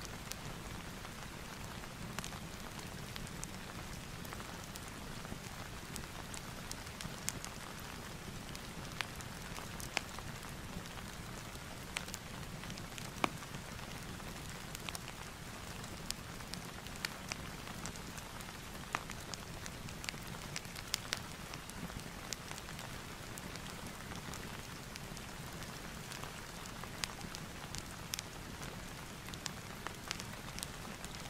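Steady rain ambience mixed with a fireplace: an even hiss of rain over a low rumble, with scattered sharp pops and crackles throughout.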